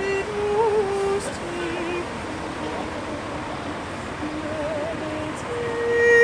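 Counter-tenor voice singing unaccompanied: a soft phrase of held notes with vibrato, swelling into a louder sustained high note near the end. Steady city street traffic noise lies underneath.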